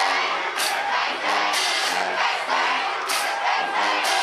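A college marching band in the stands chanting and shouting in unison over crowd noise, with a few sharp crashes.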